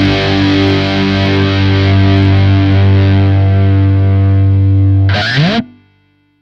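Distorted electric guitar chord held and ringing, then a quick rising sweep in pitch about five seconds in, after which the sound cuts off abruptly.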